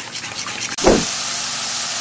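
A whisk tapping faintly against a stainless steel bowl of eggs. Just under a second in there is a thump, and then steady sizzling of sliced mushrooms sautéing in a non-stick skillet.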